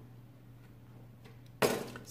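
A faint steady low hum, then near the end a single sudden sharp clink that fades quickly.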